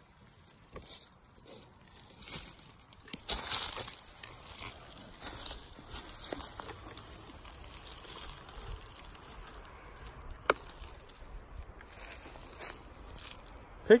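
Dry leaf litter and twigs rustling and crackling in irregular bursts as someone moves and kneels on the forest floor, with one sharp click about ten seconds in.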